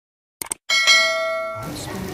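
Two quick mouse-click sound effects, then a notification bell chime that rings out and fades. Near the end, rain falling on wet pavement starts in.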